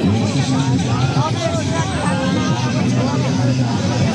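Crowd chatter: many voices talking at once close by, over a steady low drone.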